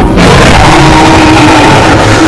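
A loud, sustained dinosaur roar sound effect, a harsh noise with a faint low pitch running through it.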